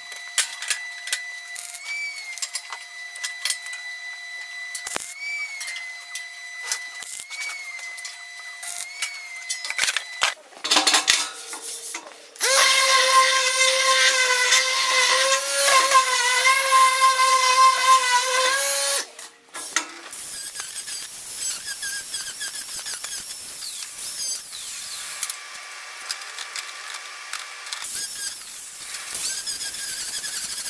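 A power drill runs in one long burst of about six seconds in the middle, its whine wavering slightly in pitch, with quieter steady tones and knocks of shop work before and after.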